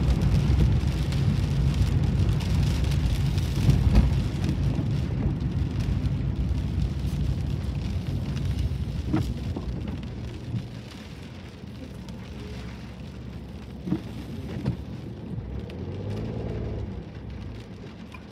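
Rain falling on a moving car with low road and engine rumble, heard from inside the cabin, with a few sharp ticks. The noise drops noticeably about ten seconds in as the car slows in traffic.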